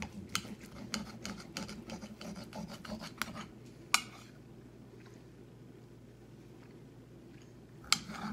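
Knife sawing through a cooked steak on a plate, the blade scraping and clicking against the plate in quick strokes for about three and a half seconds. A single sharp click of cutlery on the plate follows about four seconds in, then another right at the end as the cutting starts again.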